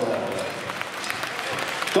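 Spectators applauding, a steady patter of many hand claps.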